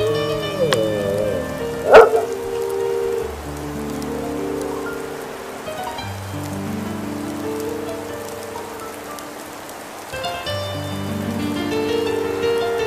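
Background music of slow, sustained chords that shift every few seconds. A brief, sharp sound about two seconds in is the loudest moment.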